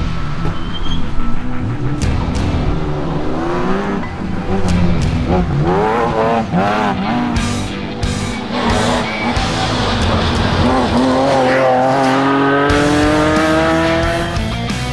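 BMW E46 M3 rally car's S54 straight-six engine revving hard on stage passes, its pitch rising and falling repeatedly through gear changes, with a long rising pull near the end. Music plays underneath.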